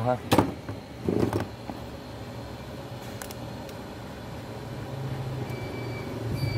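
A single sharp knock as a plastic Hitachi battery charger is handled and set down on the work surface, followed by a short scuff a second later. A steady low hum, like a distant engine, runs underneath and swells slightly near the end.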